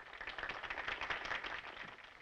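Crowd applauding, many fast claps running together, dying down near the end.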